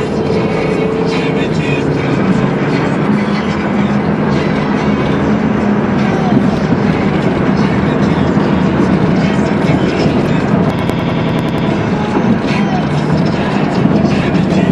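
Steady road and tyre noise heard from inside a moving car as it drives through a highway tunnel, with music playing underneath. A quick run of clicks comes about eleven seconds in.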